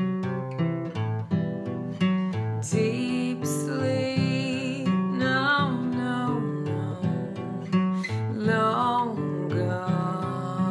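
A woman sings a verse to her own acoustic guitar accompaniment, strumming and picking. Her voice wavers with vibrato on held notes about halfway through and again near the end. She sings some words out louder and pulls back to a softer, intimate voice on others.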